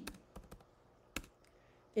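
Light, scattered keystrokes on a computer keyboard, with one sharper click a little past a second in.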